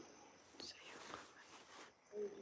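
Near silence: faint room tone with a light hiss and a couple of soft clicks.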